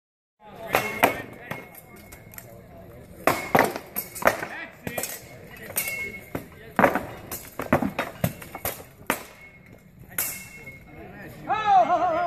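Steel swords striking shields and armour in irregular, sometimes rapid clusters of sharp hits, several leaving a brief metallic ring. A voice calls out near the end.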